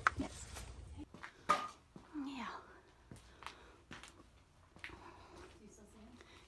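Footsteps and scattered light knocks and clicks of people moving over loose boards and debris on a basement floor, with a brief faint voice about two seconds in.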